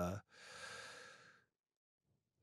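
The tail of a man's drawn-out "uh", then a soft breathy exhale or sigh into a close handheld microphone, about a second long.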